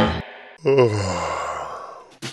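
Theme music cuts off at the start, then a dog gives a breathy, whining sigh that falls in pitch over about a second.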